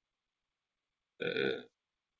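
About a second of dead silence on a video-call line, then one short voiced hesitation sound from a man, lasting about half a second.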